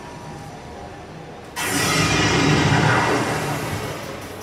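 A stage sound effect over the show's PA: about one and a half seconds in, a loud, deep, noisy burst cuts in sharply and then slowly fades, the kind used for a villain's entrance.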